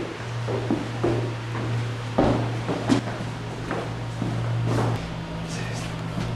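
Scattered soft thumps and knocks, about half a dozen, from large inflated exercise balls being carried and bumping about, with footsteps, over steady background music.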